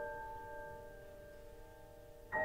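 A chord on a Steinway grand piano ringing on, several notes held together and slowly fading.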